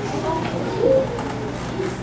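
Several children's voices murmuring and calling out at once, their pitch sliding up and down, as students try to be picked to answer.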